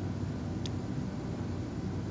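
Steady low background hum of room noise under an even hiss, with one faint brief click a little past half a second in.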